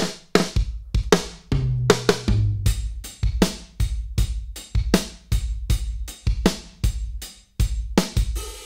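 Recorded acoustic drum kit playing a steady beat of kick, snare and cymbals, with a few lower tom hits about two seconds in and a brief gap near the end. It is a dry kit given room sound by the Sound City Studios plugin, its dynamics set to an 1176-style compressor.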